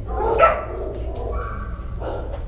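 Dog barking in a shelter kennel: a loud bark about half a second in, then a held, higher-pitched cry in the second half, over a steady low hum.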